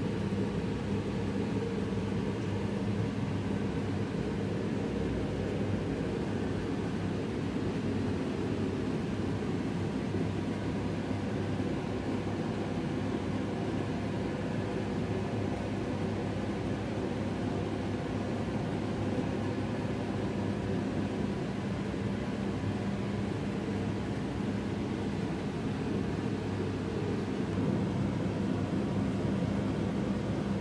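A steady mechanical hum with an even hiss over it, holding one pitch and level.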